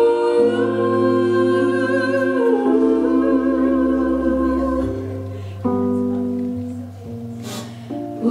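Live band playing slow, held chords, with voices singing sustained notes with vibrato in harmony and the bass note changing every two seconds or so. It grows quieter in the last few seconds, with a brief hiss near the end.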